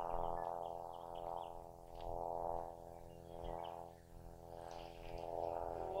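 A steady drone of several sustained tones that swells and fades every second or so, with a few faint chirps.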